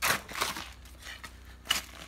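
A curved blade chopping into the base of a banana plant's fleshy stem and the soil around it, to cut out the plant. There are three sharp crunching strikes: one at the start, a lighter one about half a second in, and one near the end.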